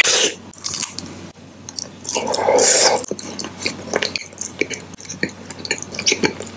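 Close-miked chewing of green-apple bubble gum, with many small wet mouth clicks. A louder, longer crunching burst of about a second comes around two seconds in.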